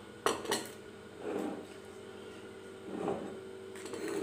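Plates and tableware clinking as they are handled on a dining table: two quick sharp clinks near the start, then two softer, duller knocks about a second and three seconds in.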